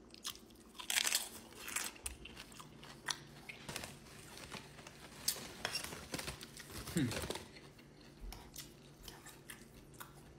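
Close-miked crunching and chewing of a Doritos tortilla chip piled with rice-bowl toppings, with the loudest crunches about a second in and again around five seconds. A short hum of approval comes about seven seconds in.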